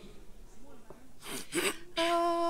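Quiet studio pause with faint murmured voices, then two short breathy, hissing sounds near the end.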